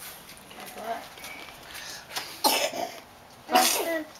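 A small child blowing hard through a bubble wand: two short, breathy, cough-like puffs, the second near the end. Faint toddler babble comes before them.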